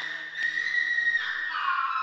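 Dramatic film score: a high, held synthesizer tone that steps down to a lower note a little past a second in.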